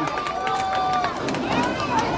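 Football crowd in the stands shouting and cheering, with a few held calls rising over the general noise, as a touchdown is celebrated.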